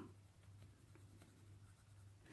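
Faint scratching of a Polychromos coloured pencil shading across paper.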